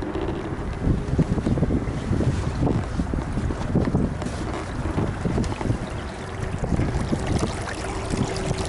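Wind buffeting the microphone aboard a small sailboat under way, a gusting low rumble over the noise of the boat moving through the water.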